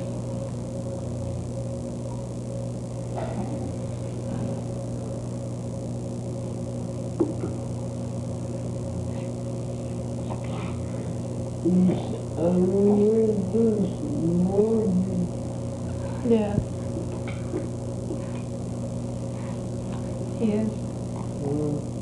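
A steady hum made of several constant tones. About twelve seconds in, a few seconds of rising and falling whimpering vocal sounds; a few more short ones come near the end.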